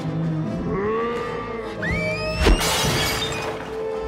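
Film soundtrack: orchestral score under a heavy crash about two and a half seconds in, the troll's club smashing the porcelain washbasins, followed by a spray of shattering debris. A high rising cry comes just before the crash.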